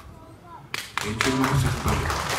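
Audience in a concert hall starting to clap about a second in, quickly swelling into applause of many hands, with voices mixed in.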